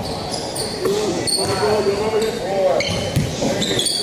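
A basketball bouncing on a hardwood gym floor, with several short, high sneaker squeaks as the players move, and voices talking in the background of the hall.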